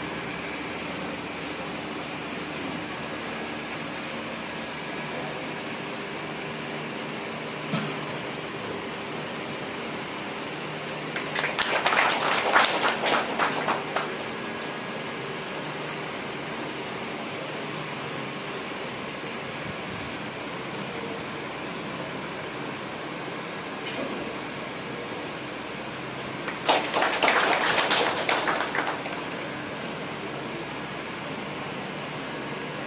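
A small audience clapping in two short bursts of a few seconds each, the second near the end, over a steady room hum.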